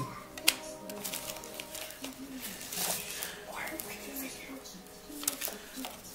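Paper leaflets being handled and rustled out of a cardboard box, with a few sharp clicks, the loudest about half a second in. Quiet background music with held notes plays underneath.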